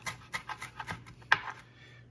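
A chef's knife fine-chopping fresh parsley and basil on a cutting board: quick taps of the blade on the board, several a second, with one louder stroke about one and a half seconds in, after which the chopping eases off.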